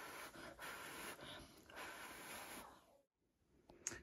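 A person blowing steadily by mouth onto wet pour paint on a canvas to push it across the surface: a faint, soft breathy hiss. It cuts off suddenly about three-quarters of the way in, followed by a moment of dead silence and a faint click.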